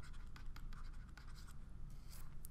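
Faint scratching and ticking of a stylus writing on a pen tablet: a run of small, quick scratches as letters are written out.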